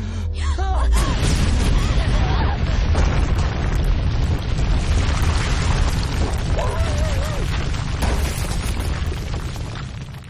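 Film sound effects of a huge crash and rumble as a burning winged creature slams into rock, with heavy low booming. Wavering cries rise out of it about half a second in and again around seven seconds, over orchestral music.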